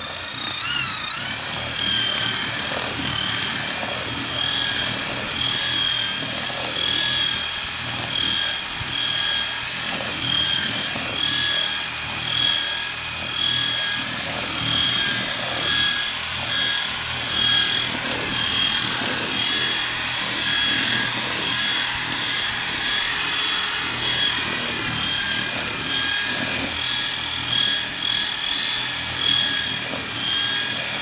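Electric drill with a paddle mixer running continuously in a bucket of tile adhesive. It makes a steady motor whine that swells and eases about once a second, over the scrape of the paddle churning the thick mix.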